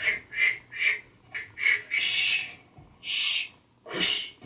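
A rapid string of 'shh' shushes from a spliced supercut of one man shushing, played through computer speakers: about seven hissing bursts, most of them short, with two longer ones past the middle.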